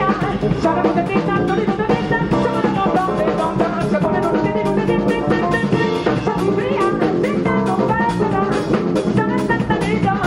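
Jazz quartet playing live: piano, bass and drum kit in an instrumental passage with a steady Afrobeat-feel groove and no singing.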